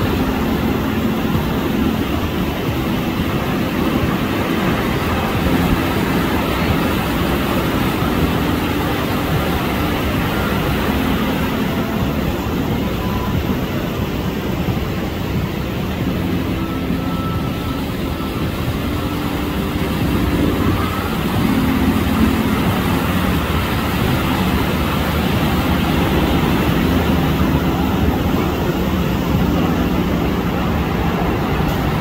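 A steady, loud wash of noise with a low engine-like drone running through it, rising a little in loudness in the second half.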